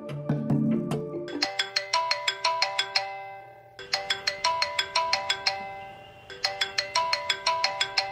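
Mobile phone ringtone: a short bright melody of chime-like notes, repeating about every two and a half seconds, starting about a second and a half in. Before it, low background music.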